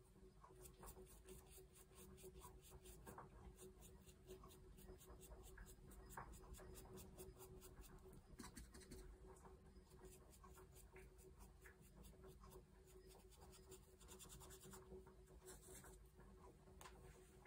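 Faint, quick, regular scratchy strokes of a small ink blending brush being worked over the edges of a fussy-cut paper flower, several strokes a second in runs with short pauses. A faint steady hum lies underneath.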